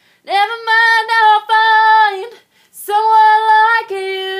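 A woman singing solo, unaccompanied, in long sustained high notes, with a short breath about halfway through.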